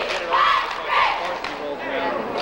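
A cheerleading squad of girls shouting a cheer together, with loud shouted syllables about half a second and one second in, over the voices of a crowd.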